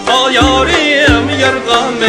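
Live Uyghur folk music from a band with long-necked lutes, frame drum and keyboard: a wavering, heavily ornamented melody line over a recurring low bass beat.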